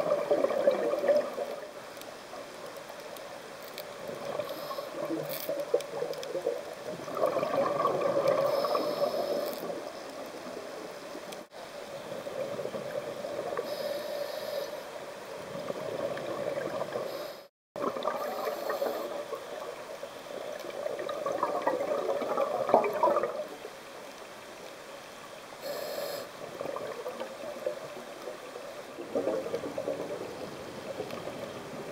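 Scuba regulator exhaust bubbles gurgling underwater, heard through the camera housing, in bursts of a second or two every few seconds as the diver breathes out. The sound cuts out briefly twice.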